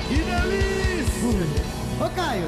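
Live band music with a steady drum beat, about four strokes a second, under a melody line whose notes slide up and down, with guitar.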